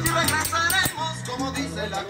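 Latin dance music with singing over a steady bass line, and a shaker keeping time with short crisp strokes.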